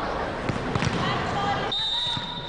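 A volleyball bounced on the court floor a few times before a serve, over indoor sports-hall crowd noise. A steady high tone begins near the end.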